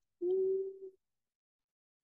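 A person humming one short, steady note, under a second long.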